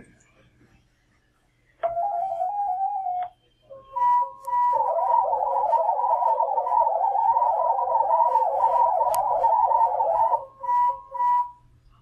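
FLDigi software modem sending a digital-mode test transmission as audio tones, acoustically coupled by holding the sound to a radio. A short run of stepping tones comes first, then a steady tone, then about six seconds of rapidly hopping warbling tones, ending with a few short beeps.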